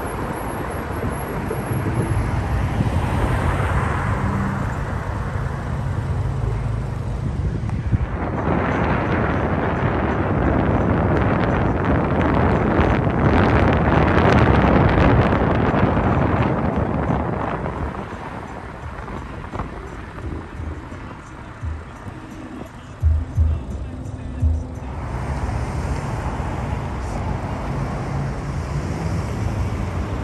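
Road and wind noise from a moving car, swelling louder for several seconds in the middle, with a few short knocks a little past two-thirds through.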